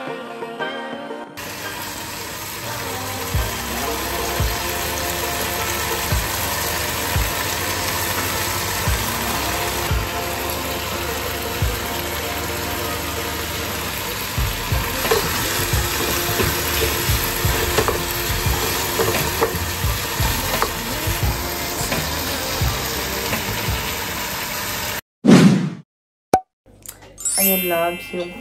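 Chicken pieces frying in a nonstick pan on a gas hob, a steady sizzle, with occasional short knocks of a utensil stirring against the pan. The sound cuts off suddenly near the end.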